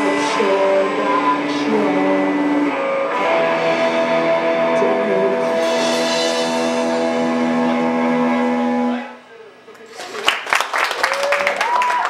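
A live rock band's instrumental ending on electric guitar, a bowed low string instrument and drums, with long held notes that stop sharply about nine seconds in. After a short gap, clapping and voices start about ten seconds in.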